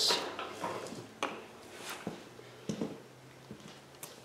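A handful of faint clicks and light knocks from hands handling a lawn tractor's painted metal transmission housing.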